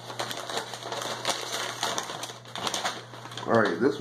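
Paper and plastic packaging rustling and crinkling with small irregular clicks and taps as the contents of an opened cardboard tackle subscription box are handled, over a low steady hum.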